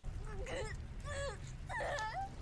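A woman's short, high-pitched whimpering cries, several in quick succession, over a steady low rumble that starts suddenly.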